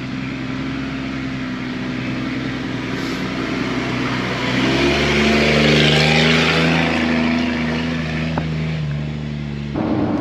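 Jeep engine heard from inside the cab while driving along a dirt trail: a steady drone that steps up in pitch and gets louder about five seconds in, then settles.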